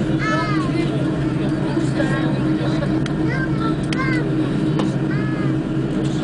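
Steady hum of an Airbus A310-300's engines and airframe at taxi after landing, heard inside the passenger cabin, with short bursts of passenger voices over it several times.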